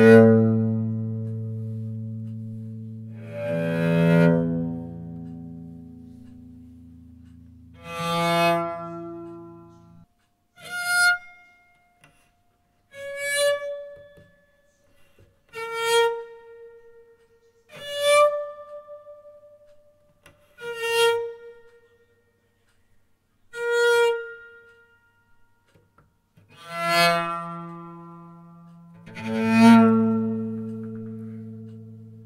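Cello fitted with 16 sympathetic strings, playing separate single notes about every two to three seconds. The low notes near the start leave a ringing hum that carries on for several seconds. The higher notes later each leave a short ring before dying away.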